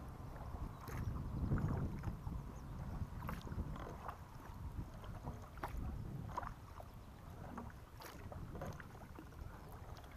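Kayak paddle strokes: short splashes and drips of water off the paddle blades every couple of seconds, over a low rumble of wind on the microphone.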